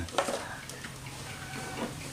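Light knocks and clicks of a plastic chicken-feeder tube being set onto its plastic feeding pan, the sharpest just after the start. A chicken clucks faintly in the background.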